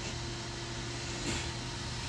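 A steady mechanical hum, like a motor or engine running at a constant speed, over outdoor background noise.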